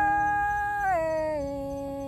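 A singer holding one long wordless note in a Thái folk call-and-response song. The pitch steps down about a second in, and the lower note is held as it slowly fades.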